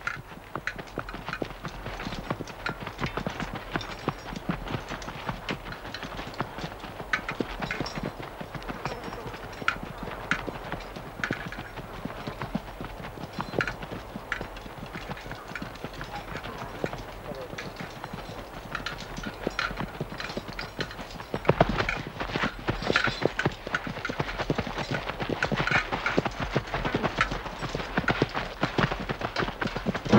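Many horses' hooves clopping on stony ground as a mounted column moves along: a dense, irregular clatter of hoofbeats that grows louder about 22 seconds in.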